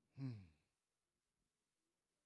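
A man's short voiced sigh, falling in pitch and lasting about half a second.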